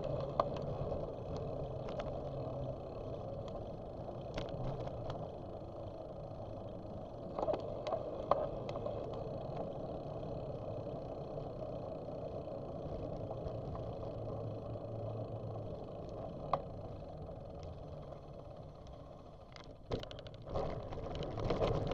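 Bicycle riding heard from a bike-mounted camera: steady rolling noise of tyres on asphalt, with a few sharp clicks and rattles from the bike. It gets quieter near the end.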